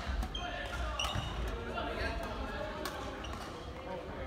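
Badminton rackets striking a shuttlecock in a doubles rally, sharp clicks a second or so apart, with thuds of footsteps on the wooden court floor.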